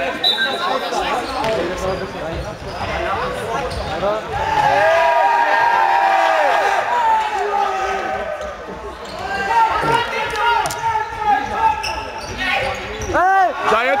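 Overlapping shouts and calls from players and spectators, with the thuds of a futsal ball being kicked and bouncing on a sports-hall floor, echoing in the hall.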